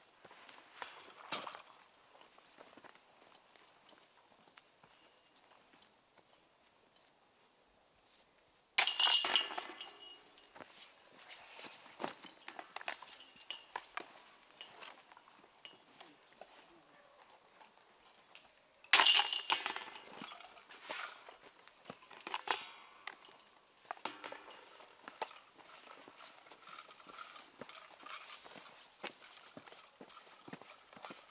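Two putts hitting the chains of a disc golf basket, about nine seconds in and again about ten seconds later, each a sudden loud metallic jingle that rattles on for a second or two. Softer chain clinks follow each one.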